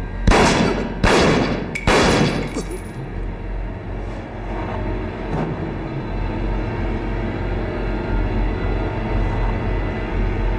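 Three pistol shots about a second apart, each with a short ringing tail. They are followed by a low, tense film-score drone.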